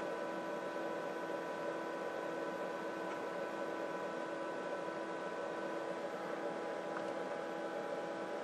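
Steady electrical hum and hiss from powered bench electronics, with several faint steady tones held at a constant level.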